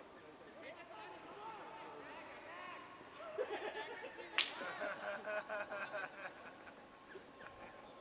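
Cricket players calling and shouting across the field during play, busiest in the middle seconds, with one sharp smack about four and a half seconds in.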